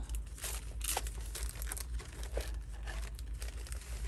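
Paper envelopes and ephemera rustling and crinkling as fingers flip through a tightly packed box of them, in short irregular bursts.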